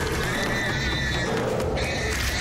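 Horror-film soundtrack: music with a long, high, wavering shriek over it, and a second shriek starting near the end.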